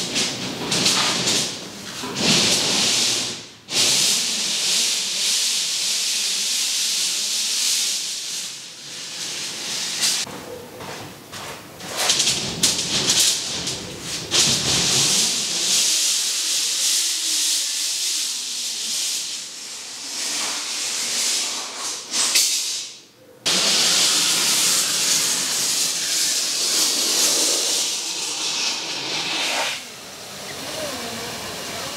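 Rain falling in a steady, loud hiss, with two brief breaks, about four seconds in and again near 23 seconds.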